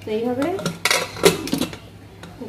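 Aluminium pressure cooker lid being fitted on and closed: metal scraping and clanking, with sharp clanks around the middle.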